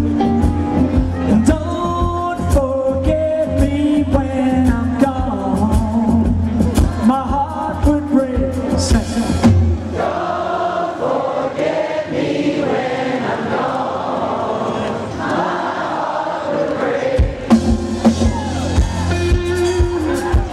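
Live rock band call-and-response: the lead singer sings a twisting vocal line over bass and drums, then about ten seconds in the bass and drums drop out and the crowd sings the line back together. The band comes back in a couple of seconds before the end.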